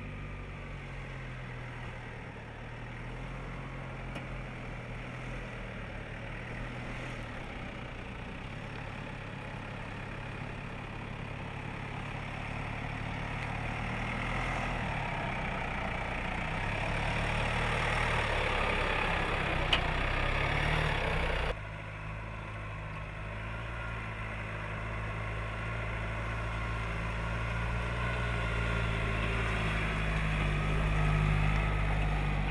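The engine of the Jeep Africa concept, a four-door Wrangler-based off-roader, running as it drives slowly over rock, its note shifting up and down and growing louder. About two-thirds of the way through the sound cuts abruptly to another take of the engine, which again slowly gets louder.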